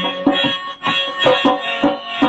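Harmonium holding steady reed chords while a dholak keeps a quick, regular beat of hand strokes.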